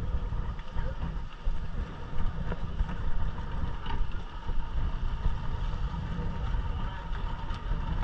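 Yamaha outboard motor running at low speed, heard under wind buffeting the microphone as an uneven low rumble.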